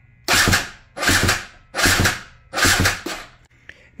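Electric starter on a 2013 KTM 300 XCW's single-cylinder two-stroke engine cranking it in four short, slow bursts, about one every 0.8 s, without the engine catching. This is the slow cranking this model's retrofit starter is known for, here with a fully charged new battery.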